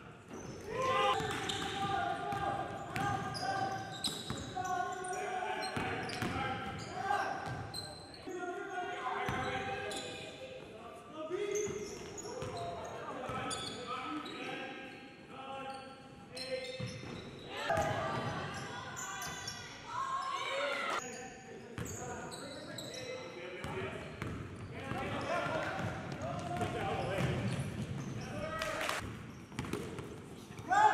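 Live gym sound of a basketball game: a ball bouncing on the court and players' voices echoing in a large hall.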